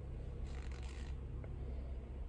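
Steady low hum inside a parked car with the ignition on and the engine off, with a soft brief rustle of handling about half a second in.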